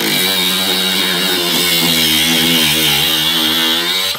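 Milwaukee M18 Fuel cordless angle grinder cutting steel, a loud high motor whine whose pitch wavers as the disc bites. It cuts off abruptly at the end.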